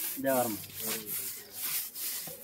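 Stiff stick broom brushing across the face of a freshly laid brick wall in repeated scratchy strokes, a few a second, sweeping off loose mortar.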